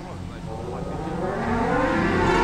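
Show soundtrack over loudspeakers: a low rumble with a slowly rising tone, swelling steadily louder as it builds into the next piece of music.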